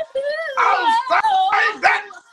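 A woman singing a wailing a cappella run, her pitch sliding up and down and breaking into raspy, breathy stretches.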